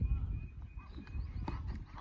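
Open-air ambience on a cricket field with a low rumble and faint distant voices. A single sharp knock comes about one and a half seconds in, as bat meets ball on the delivery.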